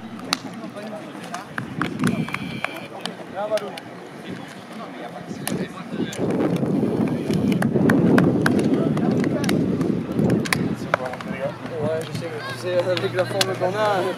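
Several men's voices talking and calling out at once, in no clear words, with scattered short sharp claps or slaps. The sound is loudest and busiest in the middle.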